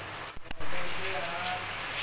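Aluminium lid set down over a steel kadai of biryani, with a short metal clink about half a second in, followed by a steady hiss.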